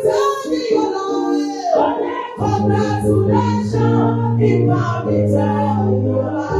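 A woman singing a gospel praise song into a microphone, over musical accompaniment that holds long, steady low notes.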